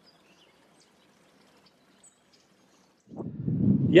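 Near silence with a few faint, scattered bird chirps; about three seconds in, a low rumbling noise rises on the microphone.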